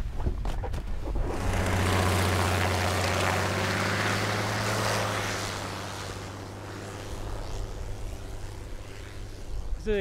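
Ski-equipped propeller plane taking off from the snow. Its engine hum swells about a second in, holds steady for a few seconds and then fades as the plane pulls away.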